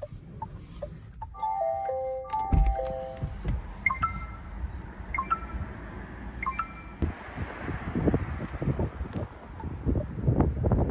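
Renault Rafale dashboard chimes: a short descending run of electronic tones, then a falling two-note alert chime repeated three times about a second apart. Soft ticks about twice a second are heard at the start, and a low rumbling noise builds over the last few seconds.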